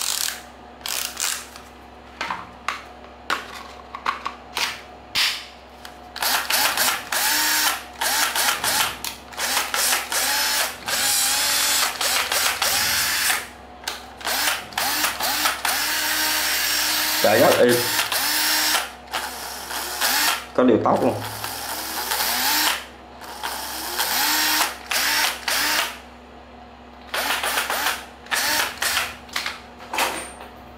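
Makita 10.8 V cordless driver-drill running off the trigger: a string of short bursts at first, then longer runs of a few seconds each, its whine wavering as the speed changes.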